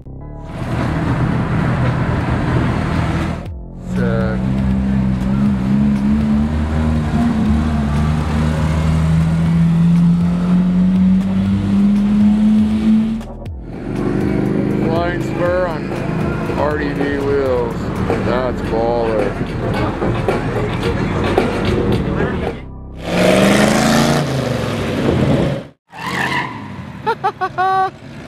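Car engines on a city street in a string of short clips. One engine pulls with a slowly rising note for about ten seconds. People's voices come over traffic noise next, then another engine revs up briefly near the end.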